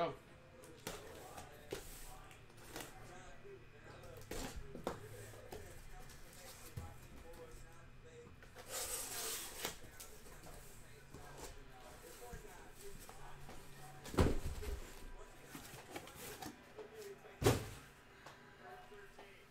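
Cardboard shipping case being handled and opened: scattered scrapes and rustles of cardboard, a longer noisy scraping stretch about nine seconds in, and two heavy thumps near the end as the case or boxes are set down.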